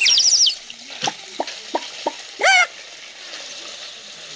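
Milky liquid pouring from a large metal pot through a cloth and splashing onto the ground, a steady hiss of falling liquid. High chirping calls sound at the start and again, louder and wavering, about two and a half seconds in, with a few short clicks in between.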